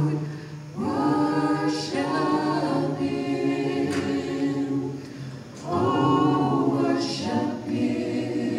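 Small gospel choir singing a cappella in harmony, holding long chords. The chords break briefly about half a second in and again around five and a half seconds in before the voices come back in.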